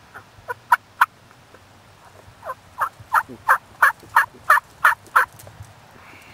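Turkey calling in loud, short notes that each drop in pitch: a few scattered notes, then a run of about ten evenly spaced ones, about three a second.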